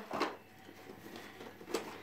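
Faint handling noise of a child's overstuffed fabric backpack being pressed down and rummaged, with one short sharp click near the end.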